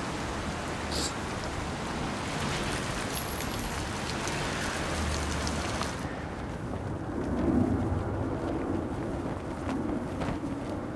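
Steady city street traffic noise, a continuous hiss and rumble of passing vehicles. About six seconds in the hiss drops away, leaving a duller rumble that swells briefly as a vehicle passes.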